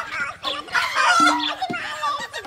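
A chicken squawking and clucking, loudest about a second in.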